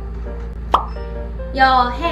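A single short, sharp pop sound effect just before the middle, over light background music with a simple stepping melody; a woman speaks one word near the end.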